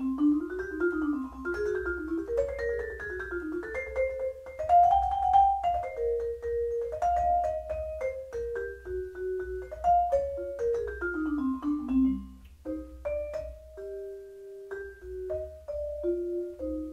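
Marimba played with four Mike Balter Titanium Series 323R mallets: a free melodic passage of struck notes and chords with a clear attack, moving in rising and falling runs. After about twelve seconds it slows to a few longer-held notes.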